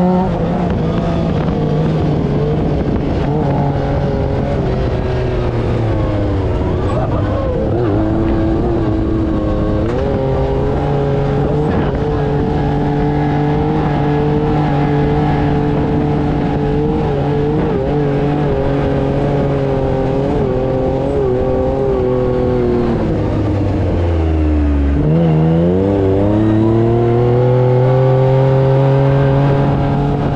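Off-road dune buggy's engine heard from on board, running hard at speed with its pitch shifting as the throttle changes. About 24 seconds in the revs drop sharply, then climb back up.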